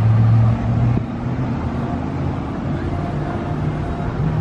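A vehicle engine running close by: a steady low hum, loudest in the first second and then easing off a little, with slight changes in pitch, over a murmur of voices.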